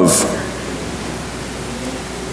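A steady, even hiss of room noise picked up through the church's microphone and sound system, in a brief pause between spoken phrases.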